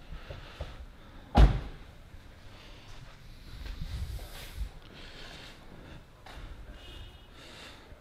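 A car door of an Alfa Romeo 159 slammed shut once, with a single sharp thud about a second and a half in; the rest is faint low rumbling and room noise.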